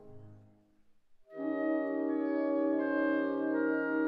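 A piano chord fades away, then after a brief pause clarinets enter about a second in, holding long sustained notes in a slow wind chord.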